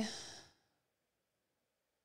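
The tail of a spoken word fading out in the first half second, then near silence.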